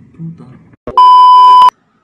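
A single loud electronic censor bleep: one steady high tone held for under a second, switched on and off abruptly.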